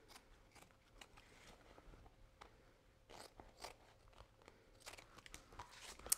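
Scissors cutting through a sheet of duct-tape fabric: a run of faint, irregular snips.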